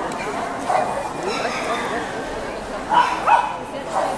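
A dog barking twice in quick succession about three seconds in, over the steady chatter of a crowd.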